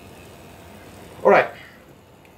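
A man's short wordless vocal sound, falling in pitch, a little over a second in, over faint room background.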